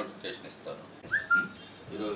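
A short, high whistle-like tone a little over a second in: a quick upward bend, then held steady for a moment, over faint talk.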